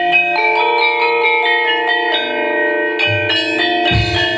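Javanese gamelan playing: saron metallophones struck with wooden mallets, their notes ringing on and overlapping in a melody, with a low beat near the end.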